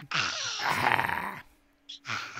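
A woman laughing loudly and breathily for about a second and a half, then stopping.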